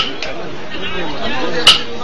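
Background voices chattering, with a sharp click at the start and another near the end.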